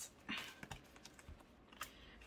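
Faint handling of paper banknotes and a cash binder on a desk: a brief rustle of bills near the start, then a few light, separate clicks and taps.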